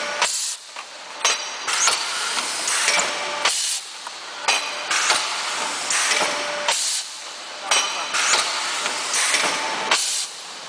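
JD-660B automatic plastic thermoforming machine running through its forming cycle, with loud hissing air blasts and mechanical noise that start suddenly and repeat about every three seconds.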